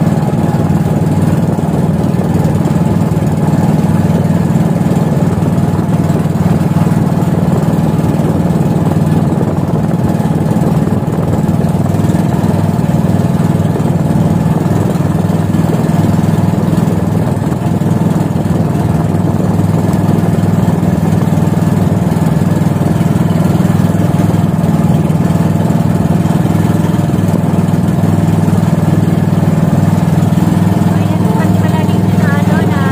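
Engine of a motorized outrigger boat (bangka) running steadily under way, a loud, even drone with no change in speed.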